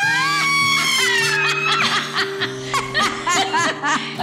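Women laughing over light background music: a long, high cry that rises and then slowly falls, breaking into quick chuckles.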